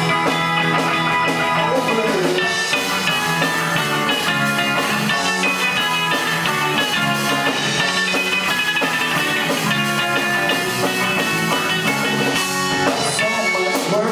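Live rock band playing an instrumental passage on two electric guitars, electric bass and drum kit, steady and full, with no singing.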